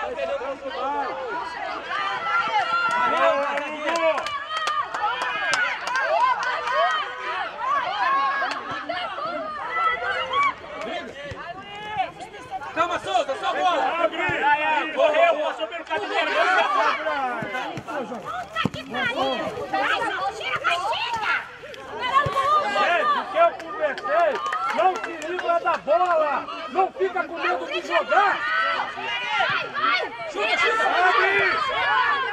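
Several voices shouting and calling over one another outdoors during a football match, players and people on the touchline, with no pause.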